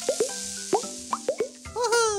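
Cartoon plop sound effects: a quick irregular run of about eight short, rising pops as balls tumble into a box, over light children's background music. Near the end comes a longer tone that slides down.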